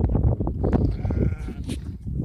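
A sheep bleating once, about a second in, a short wavering call, among the knocks and rustling of sheep crowding close.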